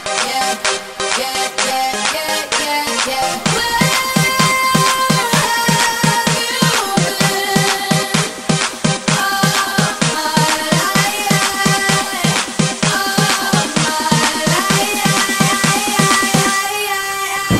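Electronic dance remix of a pop song in an instrumental passage: synth lines without vocals, with a steady four-to-the-floor kick drum coming in about three and a half seconds in.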